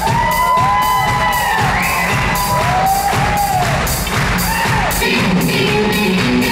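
Live rock band playing, with an electric guitar bending notes up and back down in slow arching swoops over a steady drum beat, and some crowd cheering.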